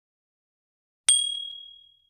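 A single bright bell-like ding about a second in, one clear high tone that fades away over most of a second: a notification-chime sound effect from a subscribe-button animation.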